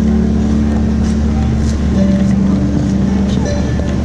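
A wheeled suitcase rolling close past over a hard floor, with voices of passersby and held harp notes ringing underneath.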